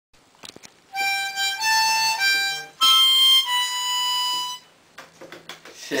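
A few light clicks, then a short tune of about five held notes on a wind instrument, each note lasting around half a second to a second, which stops about a second before the end.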